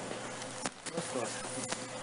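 Faint steady background hum in a pause in speech, with a few soft clicks and faint distant voices.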